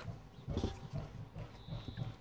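Thick cardboard board book being picked up and turned over on a table: soft irregular thuds and faint knocks of the board covers.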